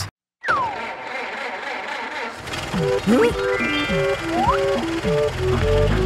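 Cartoon background music starting up after a brief cut to silence: a falling whistle-like glide, then a tune of held notes with a couple of sliding sound effects, and a bass line coming in near the end.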